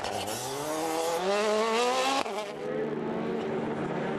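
Rally car engine accelerating hard, its note climbing steadily for about two seconds before cutting off suddenly, followed by an engine running at a lower, steadier pitch.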